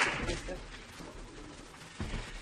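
Audience applause dying away, with a brief soft laugh near the start.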